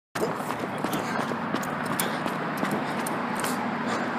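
Steady outdoor street noise with scattered light ticks, picked up while walking with a handheld camera.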